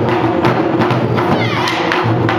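An ensemble of nagado-daiko (barrel-bodied taiko drums) struck with wooden bachi sticks, playing a fast, driving pattern of rapid strokes.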